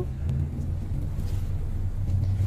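Steady low rumble of a car's engine and road noise, heard from inside the moving car's cabin.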